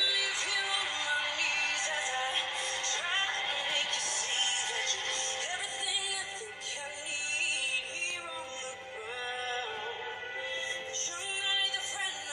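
A song playing: a solo singing voice with wavering, gliding pitch over an instrumental backing.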